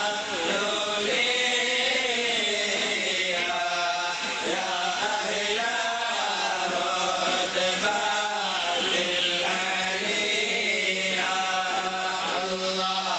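Men's voices chanting together in long, drawn-out melodic phrases that rise and fall, with a steady low hum underneath.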